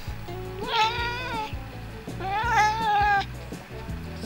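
Siamese cat meowing twice, each call about a second long.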